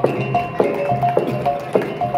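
Traditional Minangkabau percussion music accompanying a silek display: short tuned notes struck in a steady rhythm of about three to four a second over a repeating low drum beat.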